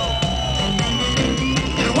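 Live reggae band playing, with a deep pulsing bass line under drums and electric guitar and a high note held through. The singer's voice comes back in at the very end.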